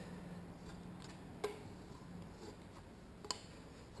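Faint handling sounds of a plastic squeegee working wet tint film against car window glass, with two light ticks about a second and a half and three seconds in, over a steady low hum.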